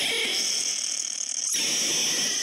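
Recorded call of a marten, played as the sound matched to a stuffed marten on a wildlife-recognition trail. The call is loud, steady and noisy, and breaks off for an instant about one and a half seconds in before going on.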